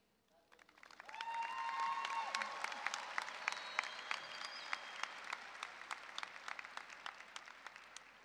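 A large audience applauding and cheering. It starts about a second in, swells quickly, then slowly dies away.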